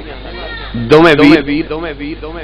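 A man's voice in a drawn-out, wavering phrase about a second long, starting near the middle, after a short lull.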